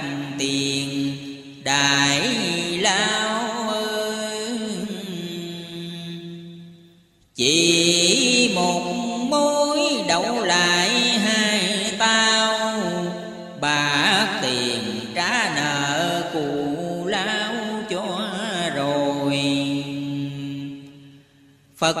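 A voice chanting Vietnamese religious verse in the drawn-out, wavering style of ngâm thơ, each syllable held long, with a steady low tone beneath. It runs in long phrases, dropping almost to quiet about seven seconds in and again just before the end.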